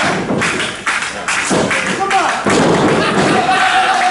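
Wrestlers landing on a wrestling ring's mat: a string of loud thuds from the ring over the first couple of seconds, with a long shout held through the second half.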